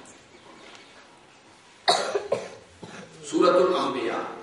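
A single sharp cough about halfway through, after a quiet pause, followed by a weaker second burst.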